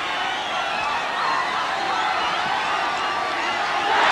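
Cricket stadium crowd cheering and shouting, a steady mass of many voices, celebrating a run-out wicket.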